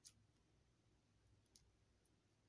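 Near silence with two faint clicks about a second and a half apart: tarot cards being nudged into place by hand.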